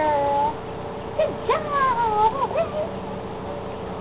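Standard poodle whining: a short high whine at the start, then a run of rising and falling whines from about a second in.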